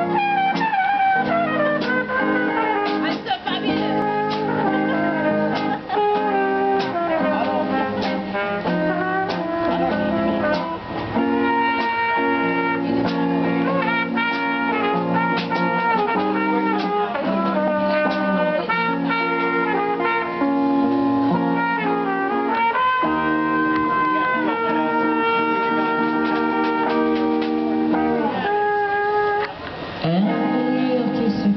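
Live band playing a song: a woman's voice singing the melody over guitars, bass guitar and a trumpet-like brass line, with no break until a short dip near the end.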